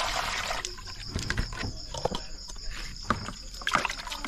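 Water sloshing and splashing as cut raw fish pieces are washed by hand in a plastic basin. A rushing splash fades about half a second in, followed by scattered light knocks and splashes. A steady high insect trill runs underneath.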